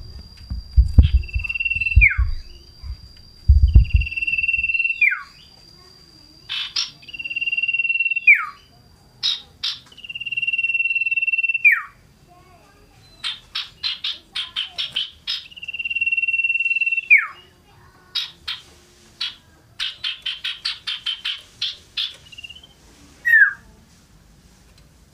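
Common iora (cipoh / sirtu) singing in a cage. It gives long held whistles, each about a second or more, that drop sharply in pitch at the end, with fast runs of short sharp notes, about five a second, in between. A few low thumps come in the first few seconds.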